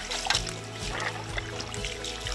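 Background music over water from a garden hose trickling and splashing onto turtle meat in a stainless steel colander.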